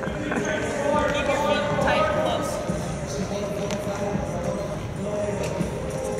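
Laughter in the first couple of seconds, over quick sneaker footfalls and light taps on a hardwood gym floor during an agility drill.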